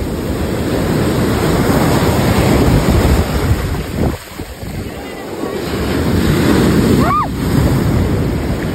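Ocean surf breaking and foamy wash rushing up the sand, with wind noise on the phone's microphone. The surf swells, drops off briefly about halfway through, then builds again.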